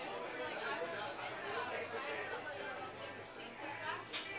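Indistinct chatter of several people talking at once, a steady babble of overlapping voices with no clear words.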